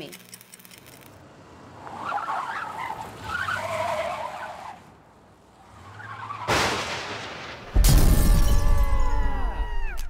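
Cartoon sound effects of a car: a skidding, driving noise a couple of seconds in, then a sudden crash, and a loud explosion about eight seconds in whose ringing tones slide down in pitch and fade as the car is wrecked.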